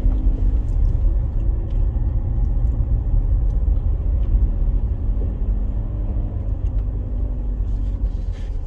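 Inside the cabin of a 2010 Land Rover Freelander 2 driving slowly on a rough country lane: a steady low rumble of engine and tyres, with a faint even engine hum above it.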